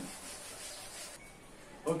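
Chalkboard duster rubbing across the board, wiping off chalk writing: a steady scrubbing that thins out after a little over a second.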